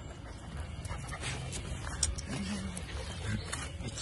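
A puppy and a larger dog play-fighting: low growling with scattered short scuffles.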